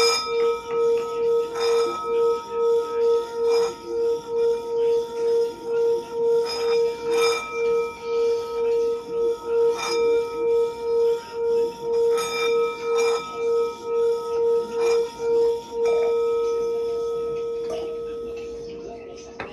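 Tibetan singing bowl held on the palm, its rim rubbed round with a wooden mallet: a steady low singing tone with higher overtones, pulsing about twice a second. Near the end the mallet leaves the rim and the tone rings on smoothly, slowly fading.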